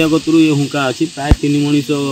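A man speaking into a handheld microphone, over a steady high hiss, with a sharp click near the middle.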